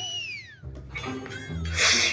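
A comic cat-meow sound effect: one call that rises and then falls over about a second, over light background music. A short loud burst of noise comes near the end.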